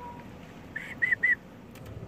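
Three short, high, clear whistled notes in quick succession, about a second in.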